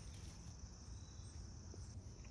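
Faint steady outdoor ambience: an unbroken high-pitched hum over a low rumble, with one small click right at the start.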